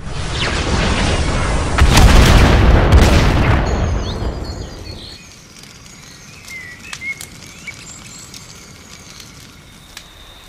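A large explosion sound effect from a bombardment: a deep rolling blast that swells over the first two seconds, is loudest from about two to three and a half seconds in, and dies away by about five seconds. After it, only faint chirping ambience.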